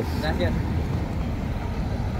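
Low, steady rumble of car engines and street traffic close by.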